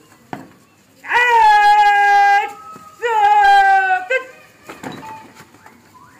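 A single loud voice shouting two long drawn-out calls, the first about a second and a half and the second about a second, each held on one pitch and dropping slightly at the end, followed by a brief short shout.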